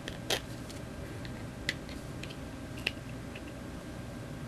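A few sharp clicks and small ticks of hard little objects being handled, three of them louder and spaced about a second and a half apart, over a steady low room hum.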